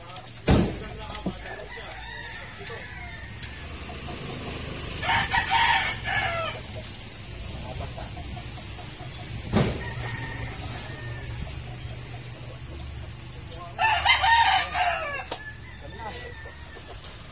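A rooster crows twice, each crow about a second and a half long, about five seconds in and again near the end. Two heavy thumps of cement sacks dropped onto a stack, the first just after the start and the loudest sound, the second midway.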